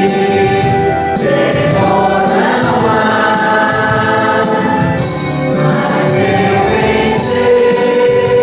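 Church hymn sung by voices over electronic keyboard accompaniment, with a steady beat.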